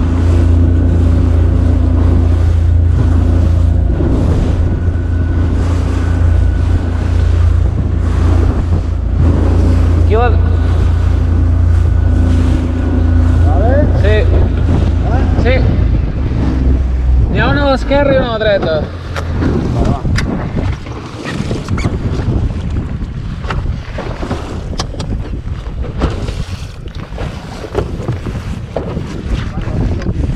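An inflatable boat's outboard motor runs steadily under way, with wind buffeting the microphone and water rushing past the hull. A little past the middle the motor's hum drops away, leaving wind and water noise. Voices call out briefly around the same time.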